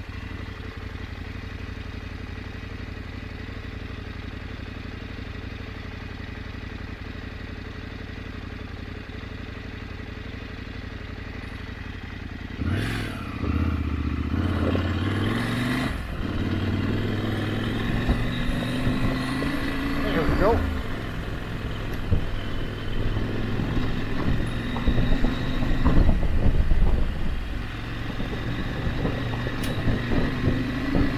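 Adventure motorcycle engine running steadily at low speed for about twelve seconds, then getting louder as the engine note climbs under acceleration, the rise breaking off at gear changes about sixteen and twenty seconds in. Knocks and clatter from the rough gravel surface come near the end.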